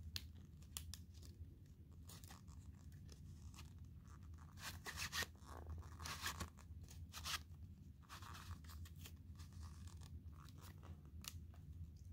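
Faint, scattered rustling and scratching of a pop-up book's paper pages and cut-out pieces being handled, over a low steady hum.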